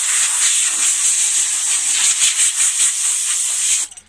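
Compressed-air gun blasting a steady, loud hiss as it blows sanding dust out of the seams of a sanded, masked helmet before priming; the blast cuts off abruptly near the end.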